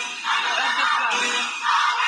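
Live concert recording: music with a crowd cheering and whooping.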